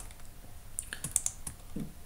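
A few quick computer keyboard key clicks about a second in, with quiet around them.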